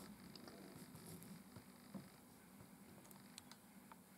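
Near silence: room tone, with a few faint, brief clicks.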